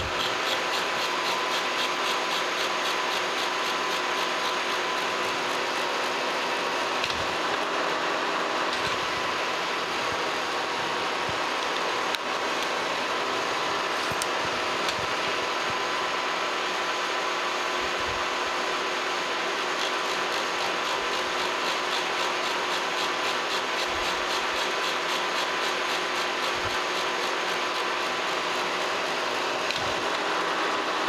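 Kearney & Trecker Model 3H horizontal milling machine running steadily, its gear cutter feeding through a gear segment to cut the teeth, with a steady hum and a fast, even ticking.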